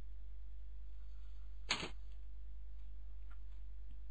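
A brief sound effect, a fraction of a second long, about 1.7 s in: a sound clip played from a PowerPoint slide when its speaker icon is clicked. It sits over a steady low electrical hum.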